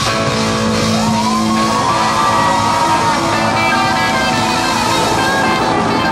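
Live rock band with amplified electric guitars, playing a blues-rock boogie. A held lead-guitar note bends upward in pitch about a second in and sustains over the band.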